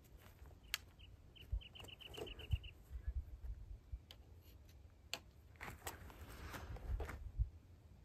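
Faint clicks and rustles of a flintlock muzzleloading rifle being handled as it is loaded and primed for the next shot. Near the start there is a quick run of about ten short, high chirps.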